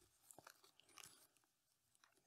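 Near silence with a few faint crackles as hands handle canna rhizomes in loose peat moss and a plastic bag.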